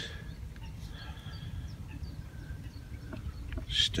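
Steady low rumble of a small boat's outboard motor turning its propeller in shallow water.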